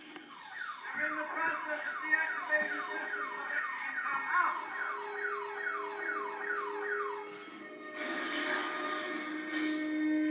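An electronic siren-like sound effect: a rapid run of falling whoops, two or three a second, that stops after about seven seconds.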